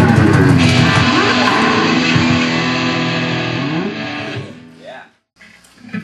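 Garage rock band playing loud electric guitar, bass and drums. The guitar slides down in pitch and climbs back up before the music fades out about four and a half seconds in. It breaks off into a moment of silence and then quiet room sound.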